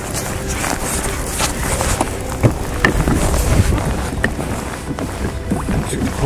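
Wind rumbling on the microphone and water lapping around a fishing kayak, with a few sharp clicks about midway.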